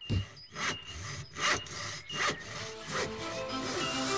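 Hand saw cutting through wood in regular strokes, about one every three-quarters of a second, as music fades in near the end.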